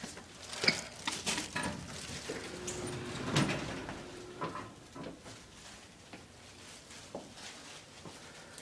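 Elevator doors sliding open: a run of clicks and knocks with a short steady hum in the middle, the loudest knock about three and a half seconds in.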